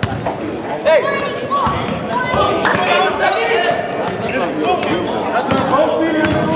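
A basketball being dribbled on a hardwood gym floor, with repeated bounces echoing in the large hall, among short squeaks of sneakers on the court and players' voices.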